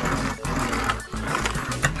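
Plastic wheels of a Rescue Bots Medix toy car rolling across a tabletop with a rattling whirr, over background music.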